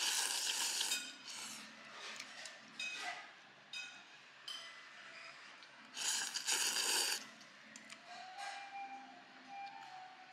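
Noodles being slurped from a bowl of hot broth: two loud slurps about a second long each, one at the start and one about six seconds in. Light clicks and clinks of chopsticks against the bowl come between them.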